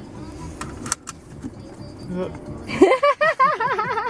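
Mercedes-Benz seatbelt being buckled, with a click about a second in, as the car's motorized belt tensioner draws the belt snug against the driver. A person laughs over the last second or so.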